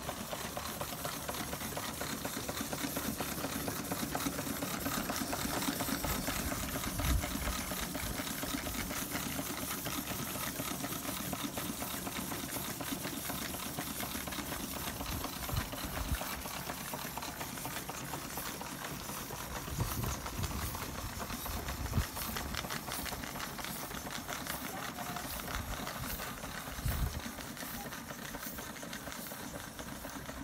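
Antique toy vertical live-steam engines, three Schoenner and a Carette, running together. Their pistons and flywheels make a fast, even clatter, with a hiss of escaping steam. A few short low thumps come and go.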